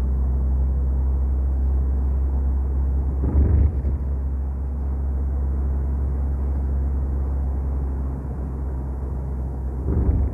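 Steady low rumble of road and engine noise heard inside a moving car, with a brief louder burst about three and a half seconds in.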